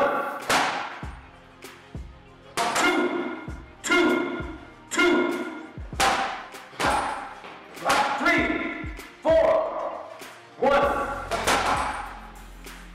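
Gloved punches thudding into a heavy punching bag, about one every second or so. Each blow comes with a short pitched call, over background music.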